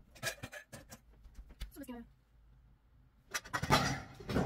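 Scattered clicks and knocks of things being handled, a brief voice-like sound falling in pitch about two seconds in, then louder clattering and rustling close to the microphone near the end.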